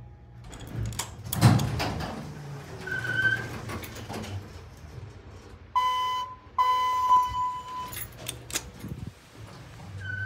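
Elevator car in operation: doors and car mechanism clatter and knock, loudest about a second and a half in, then a short electronic beep. Near the middle come two steady electronic chime tones of the same pitch, the second one longer, followed by a few more knocks from the doors.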